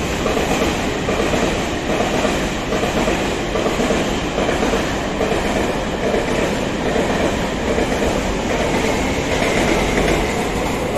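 Taiwan Railways push-pull Tze-Chiang express (E1000 series) passing through a station at high speed: a loud, steady noise of wheels on rails and coaches going by.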